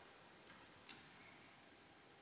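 Near silence: room tone with three faint ticks in the first second, from a stylus tapping a tablet screen while handwriting.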